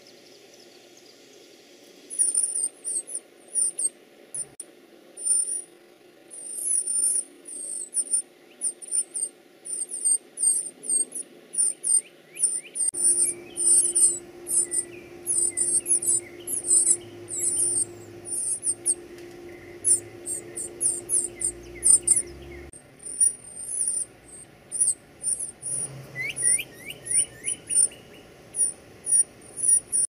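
Northern cardinal nestlings begging at the nest: rapid, very high-pitched cheeps in quick runs, starting about two seconds in and going on throughout. A steady low hum runs underneath through the middle and cuts off suddenly.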